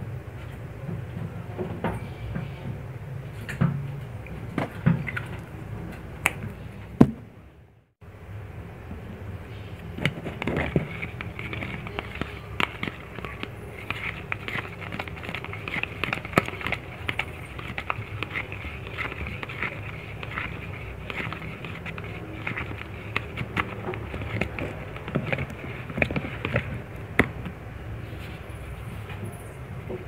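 Plastic spatula stirring and scraping a thick glue and food-colouring mixture in a plastic cup: irregular clicks, taps and scrapes over a steady hiss, broken by a brief silent gap about a quarter of the way through.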